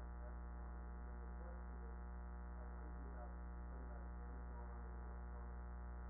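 Steady low electrical mains hum running unchanged, with no other clear sound above it.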